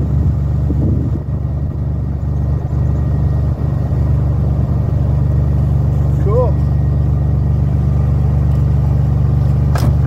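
1986 Maserati's engine idling steadily, a low even hum. A short rising whine about six seconds in.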